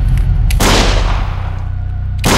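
A single handgun shot about half a second in, ringing out and fading over about a second, over a steady low rumble.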